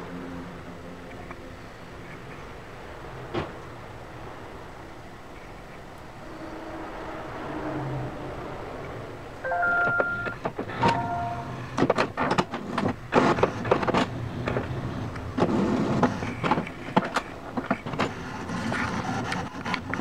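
HP DeskJet Ink Advantage 3835 all-in-one printer initialising at first power-on. A low motor whir builds, a few short tones sound about ten seconds in, and then the internal mechanism clicks and clatters rapidly for the rest of the stretch.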